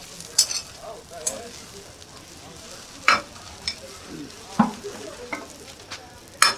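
Metal spatula scraping and tapping on a large flat dosa griddle while a masala dosa is folded and lifted off, in about six sharp, short strokes spread through, over a faint steady sizzle from the hot griddle.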